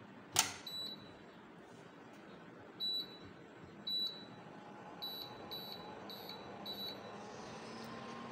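Miyako induction cooktop's touch panel beeping as its power setting is stepped down from 2000 to 1200: single short beeps about three and four seconds in, then four quick beeps in a row. A sharp click just before the beeps begin is the loudest sound.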